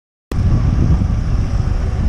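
Road traffic noise with a heavy low rumble, picked up by a cycling camera's microphone while riding alongside queued vans and cars. It starts abruptly about a third of a second in, after silence.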